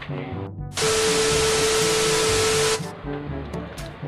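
Background music, interrupted about a second in by a two-second burst of loud, steady hiss with a faint steady tone in it. The hiss starts and cuts off abruptly, like a static-noise sound effect.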